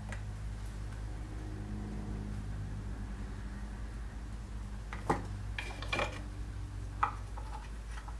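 Handling of a wire sculpture armature and pliers: a few sharp metallic clicks, three standing out in the second half, over a steady low hum.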